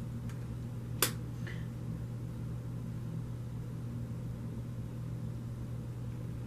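A single sharp tap from a hand on a spread of tarot cards about a second in, over a steady low hum.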